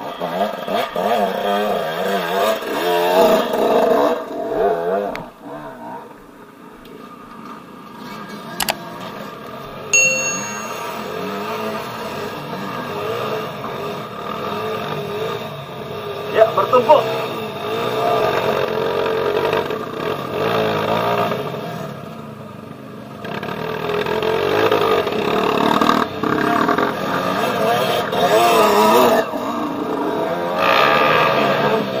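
Trail motorcycle engines revving up and down as the bikes climb a rough dirt track. They are loudest in the first few seconds and again over the last several seconds, with a quieter stretch in between.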